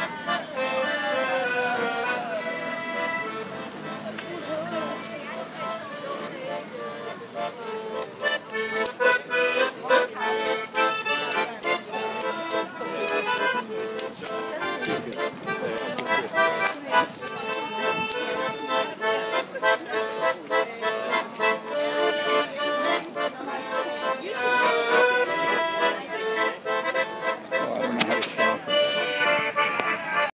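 Piano accordion playing a lively tune, with rhythmic jingling percussion running through the middle stretch.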